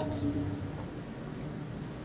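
Quiet room tone in a small tiled bathroom: a low, steady background hiss with no distinct sound.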